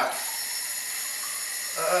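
Kitchen faucet running a steady stream of water into a small test-kit sample bottle, a plain even hiss.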